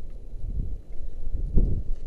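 Wind buffeting the microphone of a head-mounted action camera: an uneven low rumble, with a stronger gust about one and a half seconds in.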